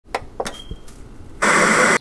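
A few sharp clicks and a brief faint high beep, then a loud burst of static hiss lasting about half a second that cuts off suddenly.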